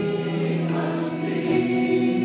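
Live worship song: several women's voices singing long held notes together over electric guitar, moving to new notes about one and a half seconds in.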